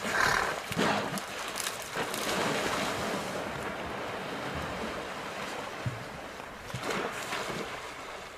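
Heavy splashing and surging of river water as a hippo thrashes through it, loudest in the first second. A second burst of splashing comes near the end as a waterbuck plunges into the water.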